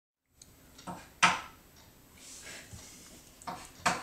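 A few short, sharp knocks and clicks in a small room: two about a second in, the second the loudest, and another pair near the end.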